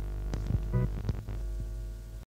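Steady low hum with several sharp clicks scattered through it, and a brief pitched note just under a second in.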